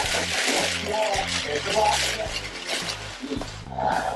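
Plastic shopping bags rustling and crinkling as hands dig through them to pull out a food container, over background music with a bass line. The rustling is loudest in the first half.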